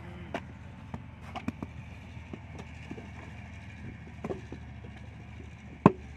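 Scattered soft thuds and knocks of wet clay and a brick mould being handled on the ground as mud bricks are moulded by hand, with one sharp, louder knock near the end. A steady low hum lies underneath.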